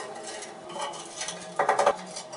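Ceramic wall tile clattering and scraping against the neighbouring tiles as it is pressed and shifted into place by hand, a short rattling burst near the end.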